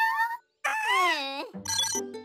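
A cartoon character's high-pitched, wordless vocal exclamation that rises and then falls in pitch, after a brief gap. Jingly background music comes in near the end.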